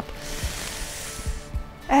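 A woman taking one long, deep breath in, an even rush of breath lasting about a second and a half that fades out shortly before the end, over faint background music.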